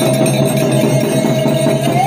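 Loud festival procession music: a barrel drum (dhol) beaten in a steady rhythm under one long held high note.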